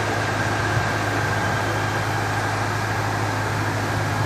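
Steady whooshing hum of electric pedestal fans running, with a low steady drone underneath and no change in level.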